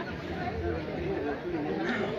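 Crowd chatter: many people talking at once, a steady mix of indistinct voices with no single voice standing out.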